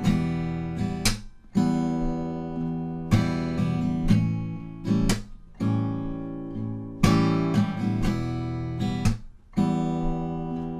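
Steel-string acoustic guitar playing a fingerstyle strum-and-slap pattern on Em and A7 chords: a plucked note, a light upstroke, then a sharp smack on the strings that briefly mutes them, followed by down, down, up strums. The smack comes about every four seconds.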